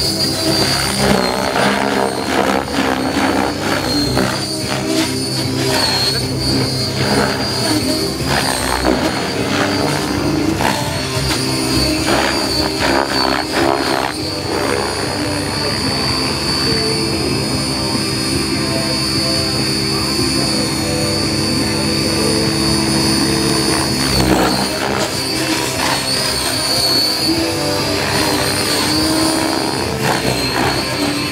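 Compass Atom 7HV electric RC helicopter flying hard 3D manoeuvres: a high motor and gear whine rising and falling with the rotor speed, over the rotor blades' noise. The sound holds steadier for several seconds past the middle, then wavers again.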